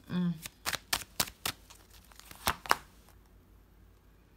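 A deck of tarot cards shuffled by hand: a run of sharp card clicks over about two seconds, the loudest near the end.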